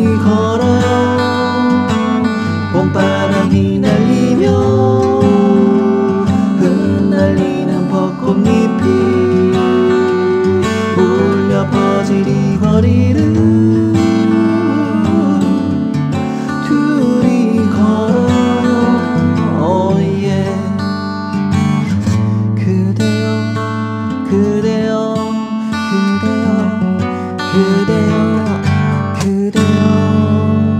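Gibson J-45 White Label acoustic guitar strummed, chords played in a steady rhythm.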